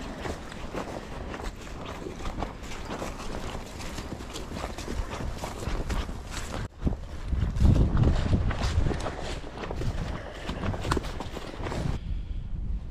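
Footsteps walking through wet grass and mud, an irregular run of soft thuds and rustles. In the second half there are low rumbles of wind on the microphone.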